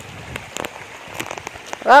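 Shallow water trickling over gravel in a small canal, an even hiss with a few light clicks. A voice starts right at the end.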